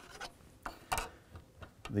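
Plastic rear cover of a Fluke 435 II power quality analyzer being handled as it comes off: a few light clicks and knocks, the clearest about a second in.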